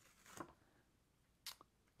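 Near silence, with two faint brief rustles as a paste-coated black cardstock panel is peeled off a clear inking palette.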